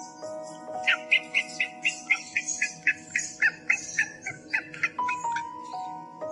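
A bird giving a rapid series of short, sharp chirping notes, about five a second for some four seconds, over background music with long held tones.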